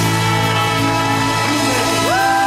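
Live ska band with a brass section of trombone and trumpets holding a long, steady chord.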